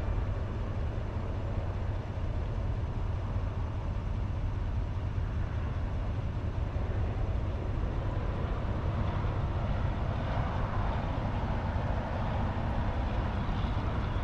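Boat engine running steadily at low speed: a continuous low rumble with a hiss over it, the hiss swelling a little past the middle.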